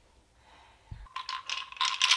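Small hard toy pieces from a children's play kit clicking, rattling and scraping as they are handled. A single soft thump comes about a second in, just before the clicking starts.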